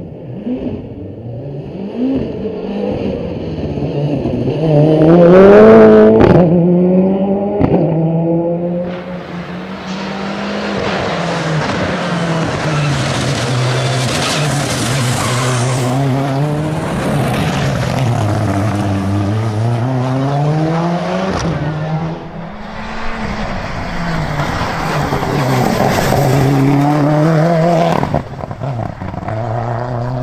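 Škoda Fabia R5 rally car's turbocharged four-cylinder engine driven flat out along a sprint stage, its pitch repeatedly climbing and dropping through gear changes and braking. It is loudest about five to six seconds in.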